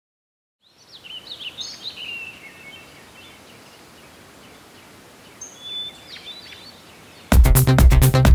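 Birds chirping over a faint, steady outdoor hiss. Near the end, loud electronic music with a steady beat cuts in suddenly.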